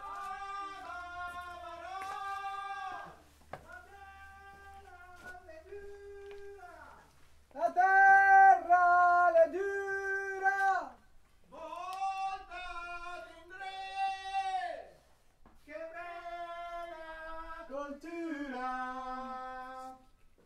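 A voice singing unaccompanied a fragment of a folk song from Piadena, in long held phrases with short breaks between them, loudest in the middle.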